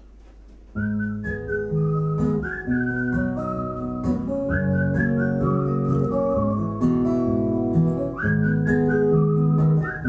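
A whistled melody over acoustic guitar, starting about a second in after a short quiet gap. The single whistled line steps and slides between notes above the guitar chords.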